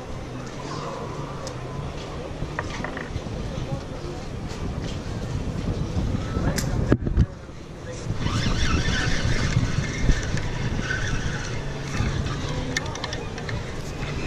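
Wind rumbling on a body-worn camera's microphone, with a sharp knock just before halfway. A louder scraping, rustling stretch follows in the second half as the camera rubs against the wooden pier railing.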